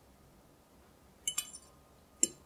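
Metal fork clinking against glassware: a quick double clink with a short high ring, about a second and a half in.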